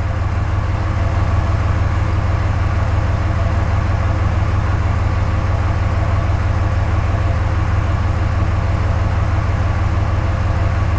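Diesel pickup engine idling steadily at about 740 rpm, a low even rumble heard from inside the cab.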